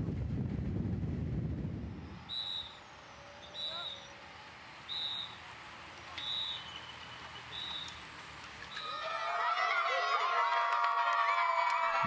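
Wind and road rush for the first two seconds, then six short, high-pitched whistle blasts about a second and a quarter apart, typical of a race marshal warning riders at a roundabout. From about nine seconds in, a crowd of children shouting and cheering.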